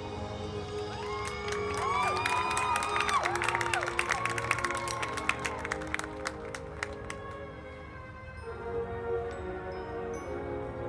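High school marching band playing held brass chords over drums. From about a second in, whoops and cheering from the crowd with clapping join in over the music for several seconds, then the band carries on alone.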